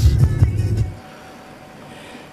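Car interior road and engine rumble at motorway speed, cutting off about a second in to quiet room tone.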